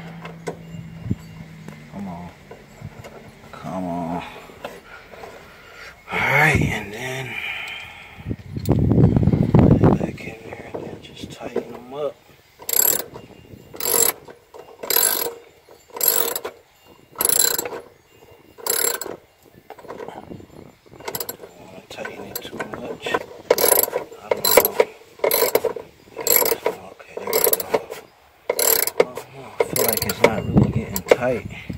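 Hand ratchet wrench tightening the bolts of a fuel pump access flange, clicking in short strokes about once a second that quicken toward the end. Before that, tools and parts are handled, with a low bump.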